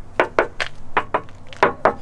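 A hand knocking on the steel off-road front bumper of a Ram 1500 Rebel: about eight sharp knocks in quick succession. The knocks show the bumper is solid metal under its black finish.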